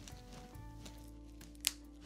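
Background music, with faint creaks from a formalin-embalmed chicken leg being flexed, then one sharp crack near the end as something in the stiffened leg breaks.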